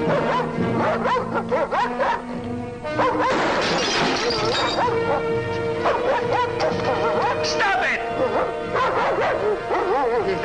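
A German Shepherd barking repeatedly over a dramatic orchestral film score, with a loud crash about three seconds in.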